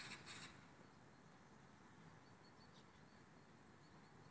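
Two short, harsh crow calls in quick succession at the very start, then a few faint, high chirps from small birds over near silence.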